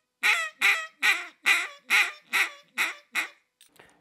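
Mulky Old Riverman duck call blown in a Cajun squeal: a run of about eight short, raspy, squealing quacks, two or three a second, growing fainter before stopping a little after three seconds in. The squeal comes from holding the tongue up near the roof of the mouth and pushing air through, to imitate a hen mallard calling with food stuck in her throat.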